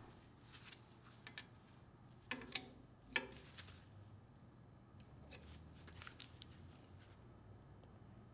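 Faint clicks and light metallic taps of small tube fittings and a wrench being handled, the sharpest few about two and a half to three seconds in, over quiet room tone.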